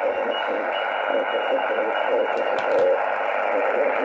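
Shortwave receiver audio from a Yaesu FT-818 tuned to lower sideband on the 40 m band, played through a small Bluetooth speaker: a steady hiss of band noise, cut off above the narrow sideband filter's passband, with a faint voice in it.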